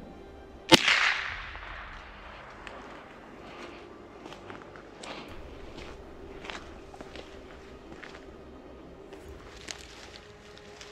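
A single gunshot from a Derya TM-22 a little under a second in, a sharp crack with an echo that dies away over about a second. After it, faint footsteps on a gravel track.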